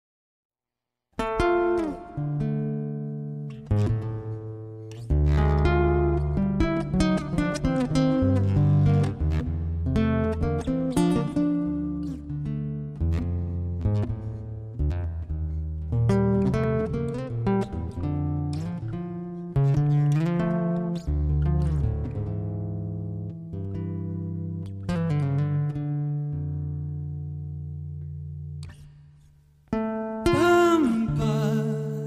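Instrumental music: plucked acoustic guitar notes over sustained low bass notes, starting about a second in, with a short drop in level near the end before the playing resumes.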